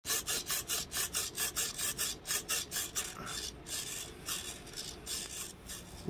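Rapid back-and-forth rasping strokes on wood, as in hand filing or sanding of a wooden boat hull, about five or six strokes a second for the first three seconds, then slower and less even.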